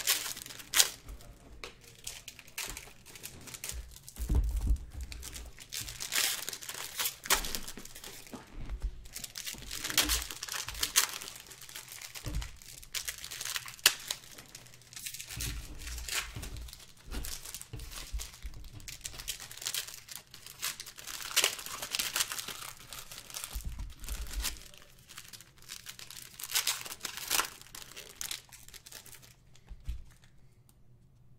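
Foil wrappers of trading card packs being torn open and crinkled by hand, in irregular crackling bursts with a few dull bumps from handling, stopping shortly before the end.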